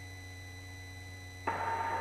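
Steady low electrical hum with a few faint steady tones on a helicopter's headset intercom feed. About one and a half seconds in, a headset microphone opens and a rush of cabin noise comes in.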